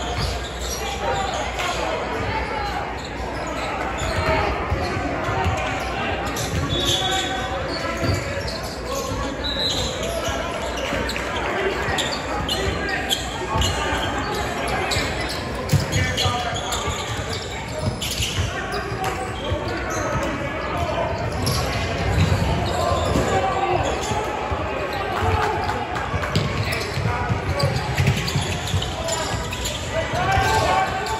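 Basketball game in a large gym: a ball bouncing on the hardwood court with scattered sharp knocks, under indistinct chatter from players and spectators, all echoing in the hall.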